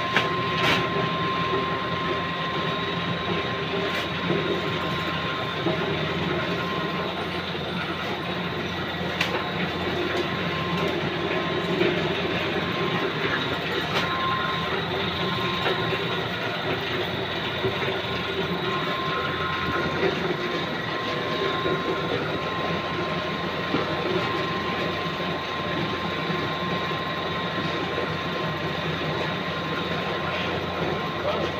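Automatic fabric rolling machine running steadily: a continuous mechanical clatter with a steady whine, broken by a few sharp clicks.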